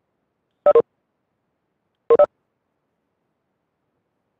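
Two short electronic chimes about a second and a half apart, each a quick pair of notes, against otherwise dead silence: videoconference notification tones.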